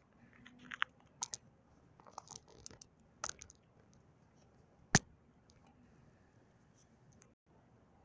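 Faint scattered small clicks and crackles close to the microphone, the handling noise of a camera being moved and zoomed, with one sharp click about five seconds in.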